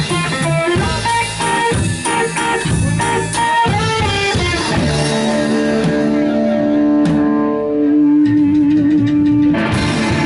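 Live band playing: electric guitar picking notes over upright bass and drum kit. About five seconds in, the drums thin out and the guitar holds long ringing notes, the last one wavering in pitch, before the whole band crashes back in just before the end.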